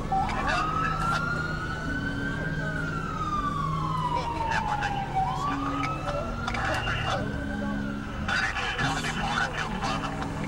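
An emergency vehicle siren wailing: one slow rise and fall over about five seconds, then rising again and fading out, over a steady low hum.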